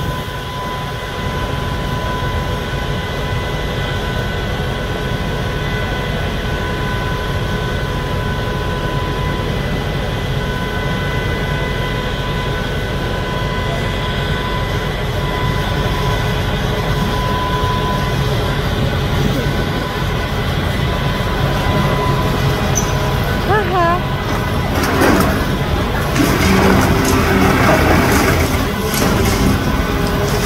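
A Volvo demolition excavator running steadily, its engine and hydraulics making a constant rumble with a steady whine. From about 25 s on, its crusher jaws break reinforced concrete, with loud crunching and rubble falling.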